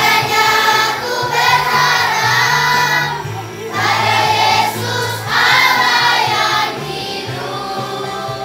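Children's choir singing an Indonesian Christmas song together over instrumental accompaniment with a stepping bass line. The singing comes in three phrases, with short breaks near 3 s and just after 5 s.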